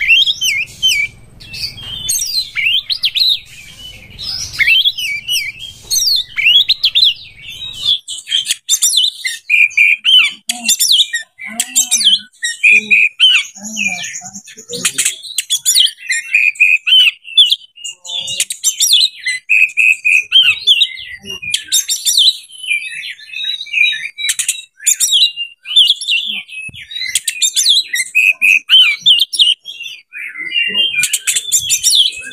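Oriental magpie-robin (kacer) singing a long, unbroken, varied song of clear whistles mixed with quick chattering phrases.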